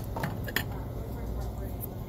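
Shop ambience: a steady low hum with a few light clicks in the first second, the sharpest a little over half a second in.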